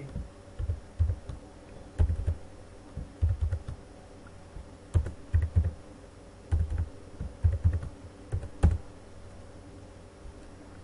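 Computer keyboard typing in short irregular bursts of keystrokes with pauses between them, over a faint steady hum.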